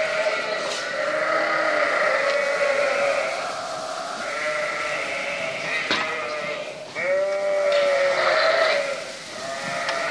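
Lambs and ewes bleating, many calls overlapping with no pause, with one long loud bleat starting about seven seconds in.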